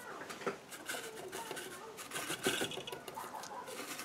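Soft scratching and dabbing of a paintbrush, working oil paint on a paper palette and then onto a gessoed board, heard as faint irregular ticks. Faint bird calls sound in the background.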